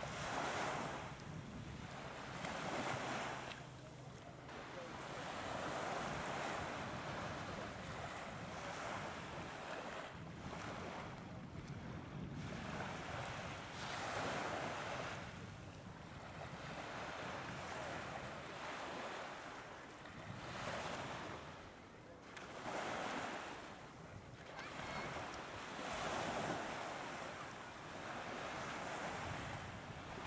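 Sea surf: small waves breaking and washing up a beach, the rush swelling and falling away every few seconds.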